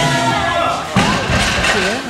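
A 325 kg loaded barbell set down onto the lifting platform, landing with a single sharp thud about a second in.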